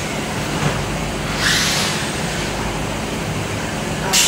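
Steady background noise of passing vehicles, a low rumble with a hiss over it. A short rustle of handled fabric comes about a second and a half in.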